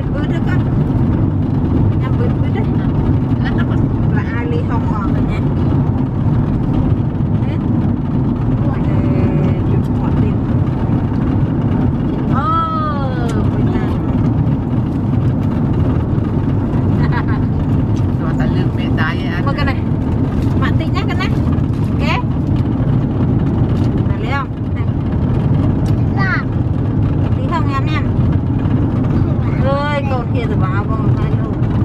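Steady low rumble of a car heard from inside the cabin, road and engine noise, with a few short high-pitched voice sounds from a child now and then, the clearest about halfway through.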